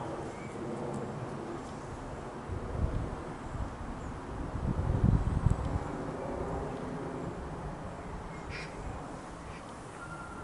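Distant airliner jet noise: a British Airways Airbus A320-232 descending overhead on its IAE V2500 turbofans, a steady rumbling haze. Low gusts, likely wind buffeting the microphone, swell about three and five seconds in.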